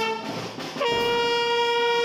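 Youth brass band of trumpets, trombone and euphonium playing long held notes in unison, semibreves of four beats each. One note ends just after the start, and after a short breath the next begins a little under a second in and is held steady at one pitch.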